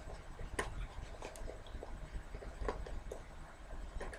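Faint, scattered clicks and scrapes of hands working a stiff side zipper up a boot; the zipper is hard to pull.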